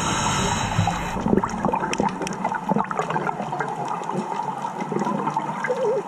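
Underwater sound of a scuba dive: the bubbly rush of an exhaled breath tails off in the first second, then scattered crackling clicks fill the pause until the next breath.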